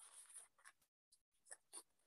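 Near silence with a few faint, brief scratchy rustles, broken by a moment of complete silence about a second in.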